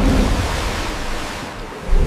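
Churning, rushing sea water with a deep rumble underneath, loudest at the start and slowly fading.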